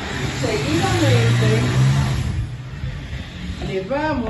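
An indistinct voice over a rushing noise with a low hum, which swells about a second in and fades again.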